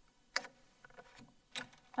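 Light clicks and taps from a flip chart pad being handled on its easel: two sharp clicks about a second apart, with a few faint ticks between.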